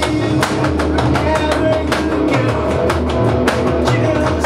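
Rock band playing a song: electric guitar, bass guitar and an electronic drum kit keeping a steady beat, with a man singing over them.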